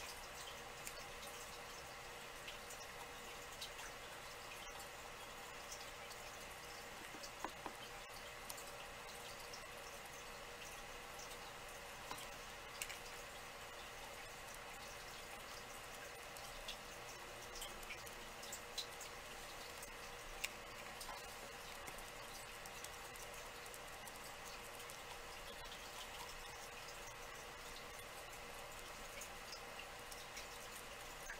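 Faint steady room hum with scattered small clicks and taps from hand craft work, a paintbrush and small pieces being handled at a work table.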